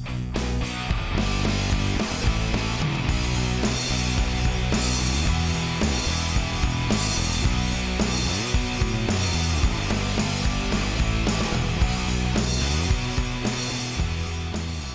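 Background rock music with a steady beat.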